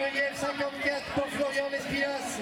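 Indistinct voices of spectators talking beside an athletics track.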